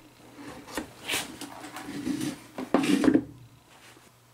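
A plastic wastebasket being handled and set down on a concrete floor, with rubbing and scraping sounds and the loudest knocks about three seconds in.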